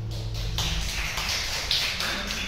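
The last acoustic guitar chord dies away, then a small audience claps about half a second in, the song having ended.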